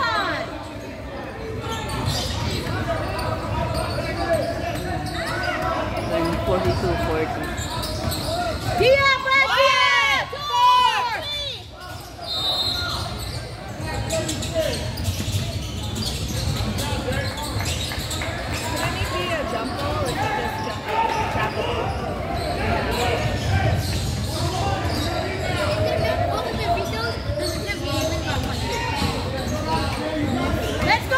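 A basketball bouncing on a hardwood gym floor during a game, amid steady chatter and calls from players and spectators, echoing in the large hall. A louder, high-pitched burst comes about nine seconds in and lasts a couple of seconds.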